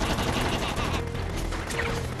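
Animated-film soundtrack mix: action music under a rapid, continuous rattle of gunfire-like cracks.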